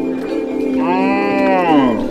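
A cow mooing once, a call of about a second that starts just before the middle, rises a little and slides down in pitch at its end, over background music with steadily held tones.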